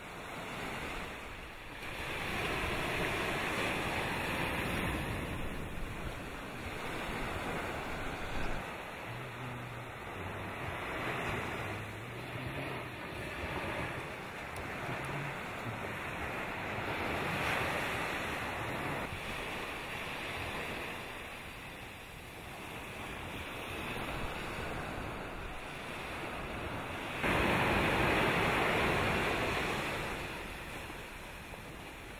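Wind on the microphone over the wash of the sea, swelling and easing every few seconds, with a sudden louder stretch near the end.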